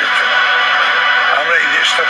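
A man speaking to camera, with background music held under the voice.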